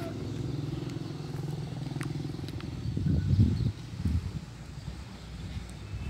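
A motor vehicle engine running steadily out of view, a low even hum for the first couple of seconds, followed by a few irregular low rumbles about three and four seconds in.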